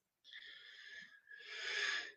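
A man's faint intake of breath, drawn in two parts with the second a little louder, carrying a slight whistling tone.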